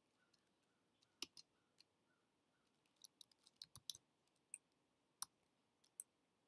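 Faint, scattered computer keyboard key clicks from typing, with a quick run of taps about three seconds in, over near silence.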